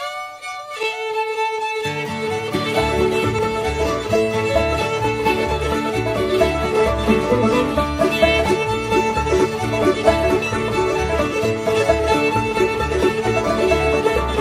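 Old-time string band playing a fiddle tune from an old cassette recording. The fiddle opens alone, then the banjo, mandolin, guitars and string bass come in about two seconds in.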